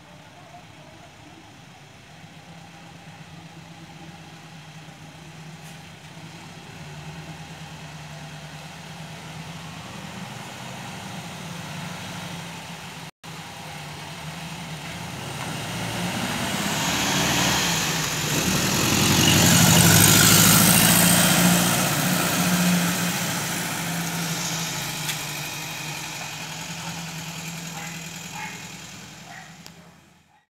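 A car's engine running as the car drives up and passes close by. The engine and tyre noise grows louder to a peak about two-thirds of the way through, then fades. There is a brief dropout near the middle.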